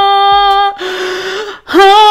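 A woman singing a long held note without accompaniment, breaking off about three-quarters of a second in for a loud breath in, then starting another held note near the end with a small upward slide into it.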